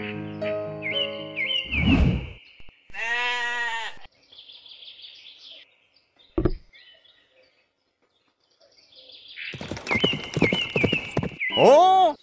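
Sound effects over fading background music: a run of high bird chirps and a thud, then a single sheep's bleat about three seconds in. Later come another short thud and more bird chirps.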